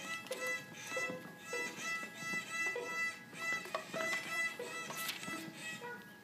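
A small child's fractional-size violin playing a simple tune in short bowed notes, a little under two a second. The playing stops near the end.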